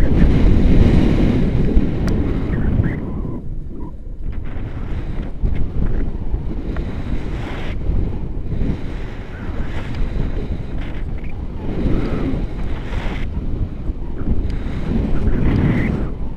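Rushing airflow buffeting a selfie-stick camera's microphone in paragliding flight: a loud, rumbling wind noise that surges and eases in gusts.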